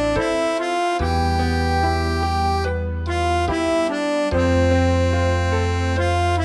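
Tremolo harmonica tone playing a slow melody of long held notes over a backing accompaniment, whose bass drops out briefly twice.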